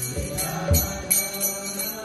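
A man chanting devotional prayers into a microphone to small hand cymbals (kartals) struck in a steady rhythm, about two to three strikes a second, with a few low drum beats.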